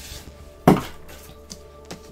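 A heavy hardback book knocking once onto a table, a single sharp thump, followed by a couple of light taps.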